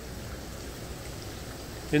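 Water running through coral aquarium tanks: a steady, even rushing with no distinct drips or knocks.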